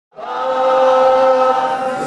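A voice chanting a protest slogan, holding one long steady note that comes in just after the start.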